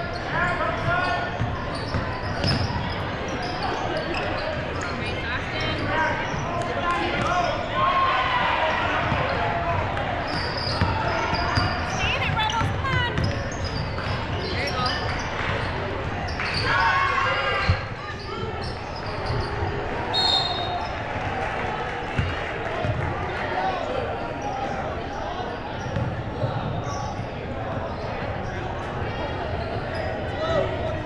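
Basketball game in a gymnasium: a ball bouncing on the hardwood court amid the steady chatter of players and spectators, echoing in the large hall.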